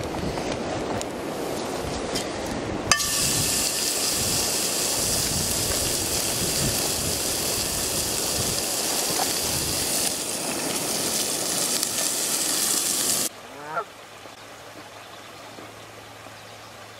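A tahr burger patty dropped into a hot oiled frying pan about three seconds in, sizzling loudly and steadily over an open fire. The sizzle cuts off suddenly near the end, followed by a brief honk from a Canada goose.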